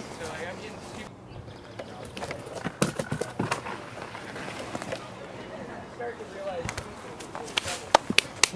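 Wood and brush being carried and handled on a dirt path: a few short knocks around three seconds in and again near the end, with rustling and faint, indistinct voices.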